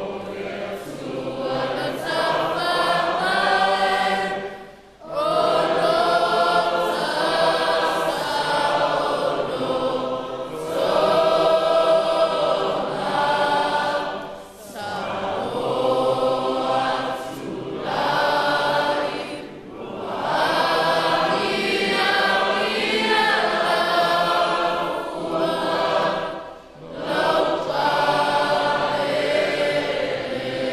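Many voices singing together in slow, held lines, with brief breaks between phrases about every five to seven seconds.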